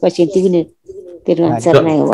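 A man's voice speaking in a slow, level, drawn-out intonation, with a short pause just under a second in.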